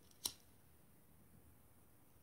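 A single sharp click about a quarter second in, a lighter being struck to light a cigarette, then near silence.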